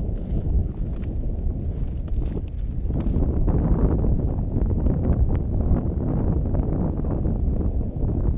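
Wind buffeting the microphone in a low rumble, with crunching of boots on packed snow, louder from about three seconds in.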